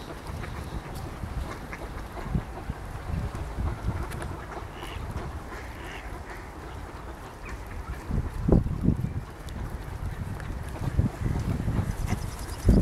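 Wind buffeting the microphone, with stronger gusts about eight to nine seconds in, and a few faint bird calls near the middle.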